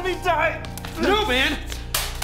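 Stage musical performance: short vocal phrases from performers over a steady musical backing, with a sharp click just before the end.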